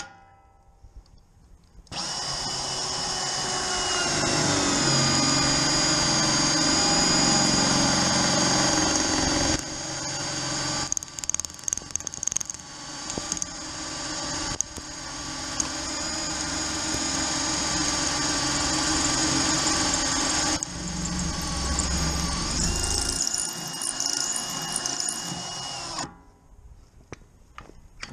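Cordless drill, mounted in a magnetic drill base, drilling a hole through a gun safe's thin steel skin. It starts about two seconds in and runs with a high whine, the load rising and dropping and turning uneven in the middle, until it stops near the end.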